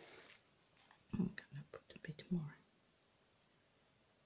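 Quiet, half-whispered speech from about a second in, then near silence.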